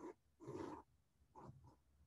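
A few short, faint strokes of a mechanical pencil sketching on watercolour paper.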